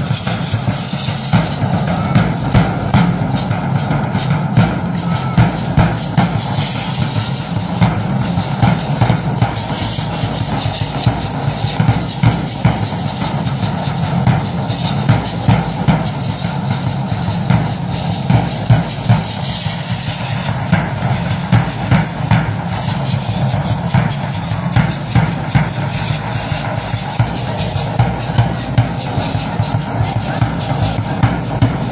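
Drum beating a steady, fast rhythm for a traditional Mexican feather dance, with the dancers' hand rattles shaking along.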